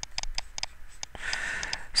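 Faint rapid ticking, about six even ticks a second, with a soft hiss shortly before the end.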